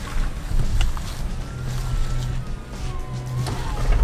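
Range Rover Sport plug-in hybrid straining up rock steps in high range on electric power alone, gas engine off: a faint whine from the electric drive that dips slightly in pitch, over tire and chassis noise on the rocks.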